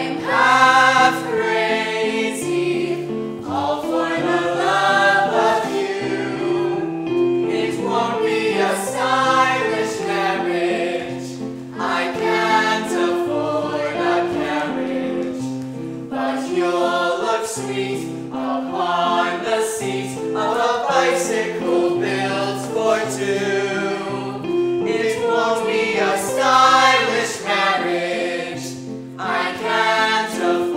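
A mixed group of male and female voices singing an old-time song together in phrases of a few seconds.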